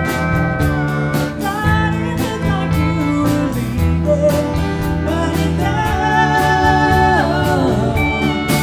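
Live country band playing, with drums, bass, guitars and pedal steel guitar, and a woman singing lead. Held notes slide downward near the end.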